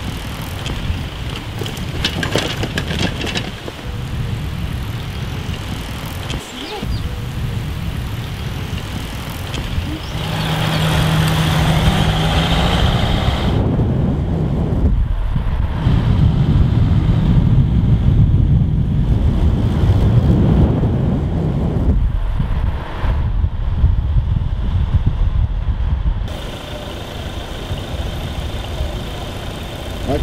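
Road and wind noise heard from a moving vehicle, a dense low rumble in several spliced stretches, with a steady low hum about a third of the way in.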